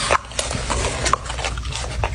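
French bulldog chewing and smacking on a mouthful of food, an irregular run of quick wet clicks.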